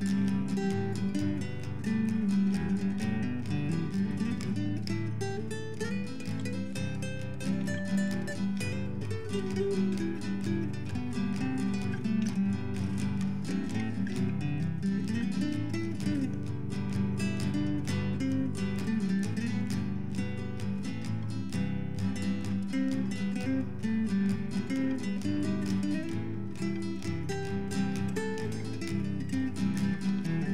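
Background music on acoustic guitar, plucked and strummed at a steady level.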